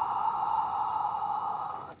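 A woman's long, steady exhale through the mouth, a breathy hiss held as a Pilates breathing exhale, tapering off shortly before the end.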